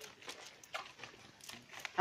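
Faint, scattered taps and rustles of small fish and a nylon net being handled on a bed of cut swamp plants.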